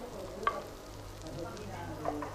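A metal ladle stirring a thick stew of potatoes, mote and charqui in a clay pot, with one short knock against the pot about half a second in, over a low steady hum.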